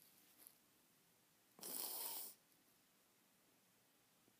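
A woman sniffing once, a sharp breath through the nose lasting under a second about one and a half seconds in, as she cries; otherwise near silence.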